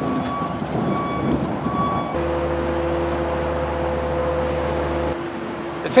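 A vehicle's reversing alarm beeps in a steady on-off pattern, a little over one beep a second, over a rough rumble of machinery. From about two seconds in, a steady low engine hum with a couple of held tones takes over and stops about five seconds in.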